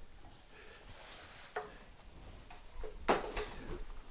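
Faint handling sounds as a fabric packing folder is picked up and brought out: a small tap about one and a half seconds in and a short fabric rustle about three seconds in.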